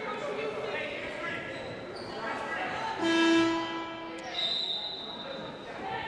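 A gym scoreboard horn sounds once, a steady buzzing tone lasting about a second, roughly three seconds in. It sounds over the ambience of a gymnasium with a basketball bouncing on the hardwood floor. A thin, steady high tone follows near the end.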